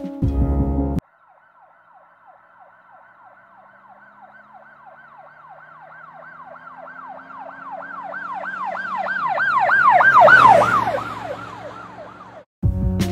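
Emergency vehicle siren on a fast yelp, sweeping up and down about three or four times a second. It starts about a second in, grows louder until about ten seconds in, then fades as if passing by.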